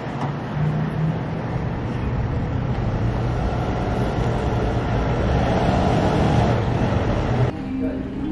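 Steady road traffic noise, a low hum under an even rush. It cuts off suddenly near the end.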